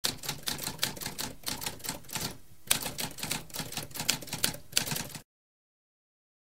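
Typewriter keys clacking in a rapid run of keystrokes, with a brief pause about halfway, stopping suddenly about five seconds in.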